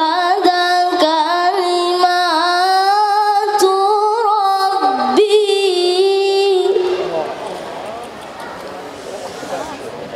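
A boy reciting the Qur'an in the melodic tilawah style through a microphone and PA, holding long notes with wavering ornaments. The phrase ends about seven seconds in, leaving a few seconds of quieter hall noise.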